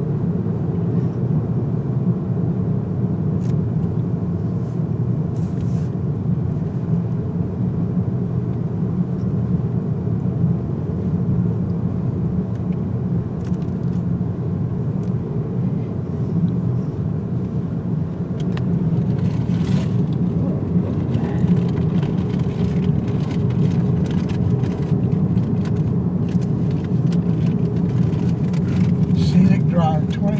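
Steady road and engine noise heard from inside the cabin of a moving car, a constant low rumble with a few faint clicks.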